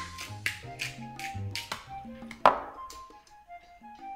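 Light jazz samba background music with held notes, over a string of sharp, irregular ticks and taps, the loudest near the start and about two and a half seconds in.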